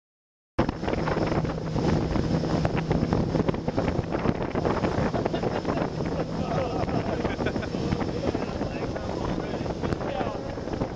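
Wind buffeting the microphone over a motorboat's engine running steadily at towing speed, with rushing water from the wake. The sound cuts in about half a second in.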